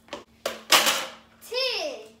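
A couple of light clicks and then a short, loud clatter, as a plastic kitchen bin's lid is worked. Near the end a child's high-pitched voice rises and falls in one drawn-out cry.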